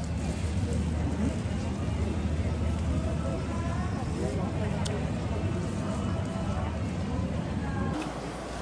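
Street-market background noise: a steady low rumble with indistinct voices of people around.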